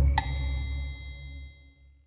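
A single bright metallic ding, struck once just after the start and ringing out, fading away over about a second and a half, over the dying low note of the music's final chord.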